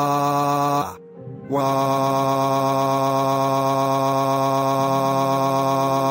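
A computer text-to-speech voice holds a long, flat-pitched "waaaa" as a cartoon character's crying. The first note breaks off about a second in, and a second, longer "waaaa" follows at the same pitch for about five seconds.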